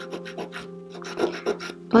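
A 180-grit nail file rasping in short strokes across a dip-powder fingernail, buffing the powder layer smooth, over steady background music.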